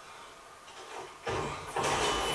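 Television episode soundtrack: faint for about a second, then a steady low rumble with scraping noise starts suddenly and holds, as the wooden crate holding the wight is opened.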